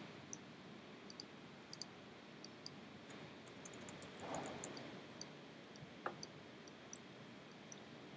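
Faint, scattered clicks from a computer mouse, irregular and a second or so apart, over quiet room tone, with a soft rush of noise about four seconds in.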